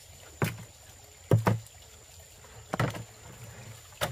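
Hollow knocks and thumps from a plastic jerrycan being pressed and settled into place among rocks, about four or five sharp strikes, two of them close together in the middle.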